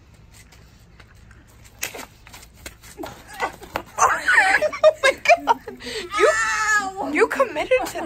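A few faint knocks, then about four seconds in loud laughter and shrieks from young women as one of them tumbles onto the paving.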